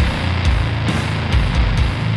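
Background rock music with a steady beat.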